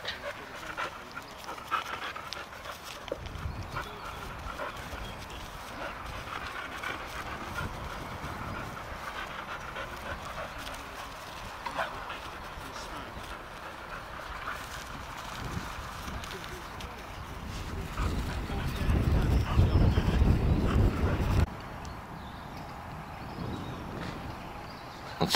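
Gundogs panting, with faint voices in the background. About three-quarters of the way through, a loud low rumble starts and cuts off suddenly.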